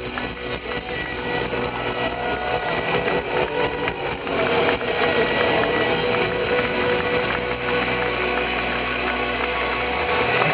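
Celtic punk band playing live, heard loud from within the audience, with sustained notes held over a dense wash of band and crowd sound.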